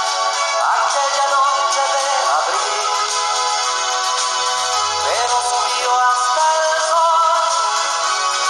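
A man singing a slow ballad over instrumental backing, with long held notes. The sound is thin, with almost no bass.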